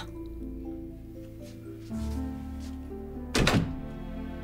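Soft background music of held notes, with a door shutting with a short thud about three and a half seconds in.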